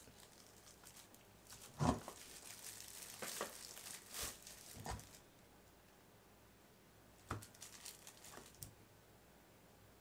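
Faint crinkling of clear plastic shrink film as it is handled and pressed along a sealing bar, with a few soft knocks from about two seconds in; it goes quiet for a while in the middle.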